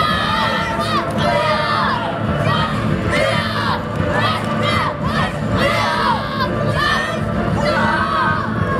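Many children shouting short, sharp kiai battle cries in quick succession, one after another, while a crowd cheers.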